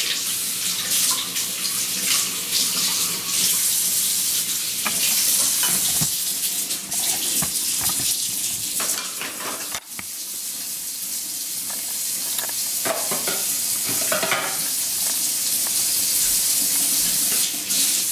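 Kitchen faucet running into a stainless steel sink while juicer parts are rinsed and scrubbed under the stream, with a few knocks of the parts against the sink. There is a brief break about ten seconds in, and then the steady rush of water goes on.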